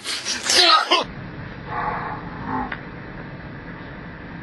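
A loud burst of voice, then, after a cut, the steady low rumble of a moving car's cabin with faint voices and a single click.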